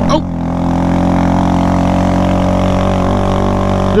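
Honda Grom's 125 cc single-cylinder four-stroke engine running under throttle at a steady, unchanging engine speed while the bike is ridden.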